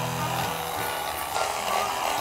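A fillet knife scraping scales off the underside of a flounder, where the scales are tougher, as a steady scraping noise with faint background music beneath.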